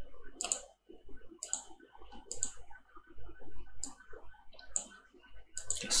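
Computer keyboard keys and mouse clicking, single clicks and quick pairs about once a second, as scores are typed into a spreadsheet.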